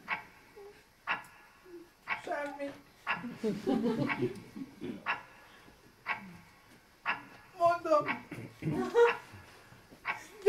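A man's short, wordless whimpering and moaning sounds, broken up and rising and falling in pitch, with sharp clicks roughly once a second in between.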